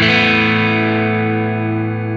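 A single chord struck on a G&L ASAT electric guitar through a West Co Blue Highway overdrive pedal set for a light, fairly clean overdrive, left to ring. Its top end falls away as it sustains while the pedal's high cut knob is turned.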